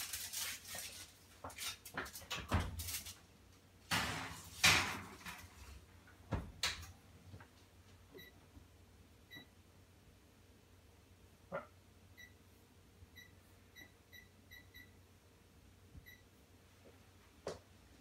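Knocks, rustling and a couple of dull thumps as a foil-covered glass baking dish is handled and put into the oven. About eight seconds in, a run of faint short electronic beeps from a kitchen appliance's keypad follows, with a stray click or two.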